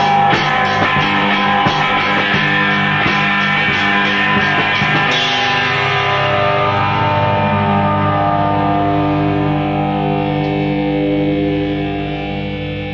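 Rock band playing guitars over a drum kit; about five seconds in the drums stop and the guitar chords ring on, held and sustained, fading slightly near the end.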